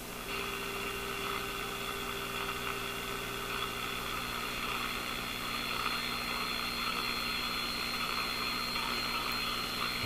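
The speaker of a five-tube AA5 valve radio hisses with static over a low mains hum while its trimmer is adjusted during alignment. The hiss gets louder about a third of a second in, with a faint steady tone for the first few seconds.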